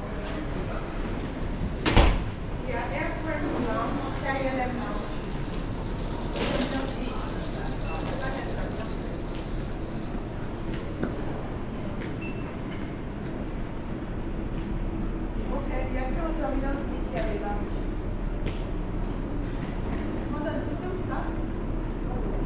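Airport terminal concourse ambience: a steady low hum and room noise with indistinct voices coming and going, and one sharp knock about two seconds in.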